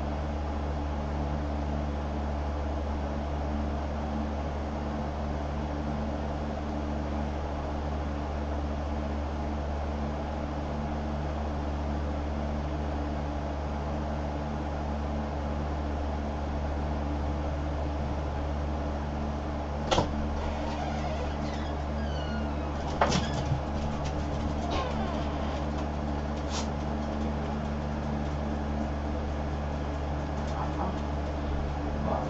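Steady low mechanical hum of room noise, with a few sharp clicks about two-thirds of the way in.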